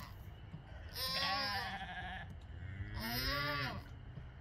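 Goats bleating: a call about a second in, then a shorter one about three seconds in.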